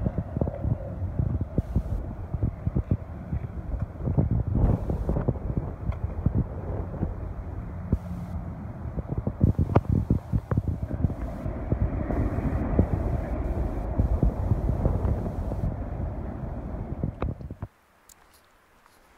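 Wind buffeting the phone microphone in uneven gusts, over the rumble of traffic on a road bridge. It cuts off suddenly near the end.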